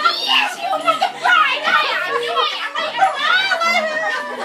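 Several excited women's voices shrieking and shouting over one another, high and overlapping without a break.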